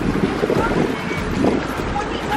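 A motorboat running on the water, with wind buffeting the microphone and a steady low rushing noise.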